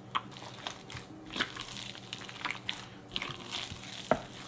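Bare hands kneading soft masa dough in a glass bowl of melted lard, giving irregular short wet squelches, about two a second.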